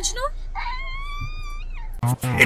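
A toddler's long, high-pitched whine, held for about a second and falling off at the end.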